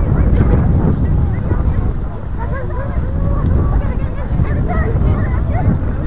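Wind buffeting the microphone with a steady low rumble, over scattered distant shouts and calls of players and spectators across an open field.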